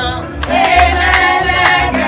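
A group of women singing together, with hand claps about twice a second; the singing comes in louder about half a second in.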